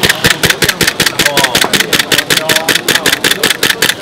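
Gas blowback airsoft pistol firing a fast, even string of shots, about nine a second, with the slide cycling on each shot. The gun is iced over from the cold gas and still keeps firing.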